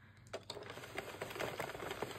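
Hand-cranked circular knitting machine turning, its plastic needles clicking quickly as they pass through the yarn carriage; the clicking starts a moment in.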